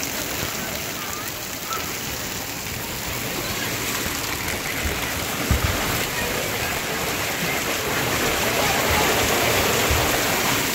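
Steady rush and patter of splashing water, growing louder in the second half as the ride goes down an enclosed plastic tube water slide with water streaming through it. A short thump about five and a half seconds in.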